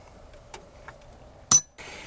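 A couple of faint ticks, then one sharp metallic clink with a short, high ring about one and a half seconds in: loose metal parts or tools knocking together.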